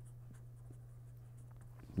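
Marker pen writing on paper, a faint scratching of pen strokes over a low steady hum.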